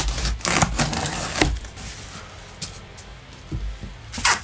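Packing tape ripping and a cardboard box being torn open by hand: a run of sharp ripping and crackling in the first second and a half, then quieter rustling of cardboard.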